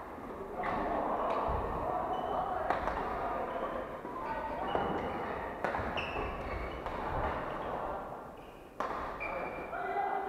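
Badminton rackets striking a shuttlecock during rallies: several sharp smacks at irregular intervals, the sharpest near the end, echoing in a large sports hall over a background of players' chatter.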